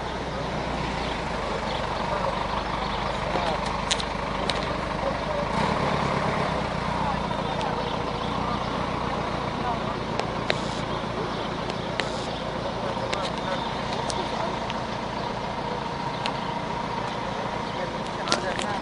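Onlookers talking over one another, over a steady background of street and traffic noise, with a few short sharp clicks scattered through.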